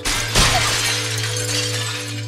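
A glass door pane shattering, with shards falling to the floor. The crash starts suddenly, is loudest about half a second in and trails off over the next second or so. Steady background music tones continue underneath.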